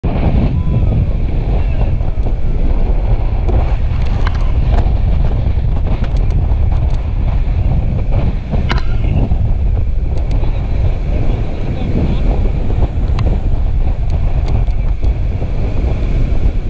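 Steady rush of whitewater around an inflatable raft, with heavy wind buffeting on the microphone making a loud, deep rumble. Faint voices come through now and then.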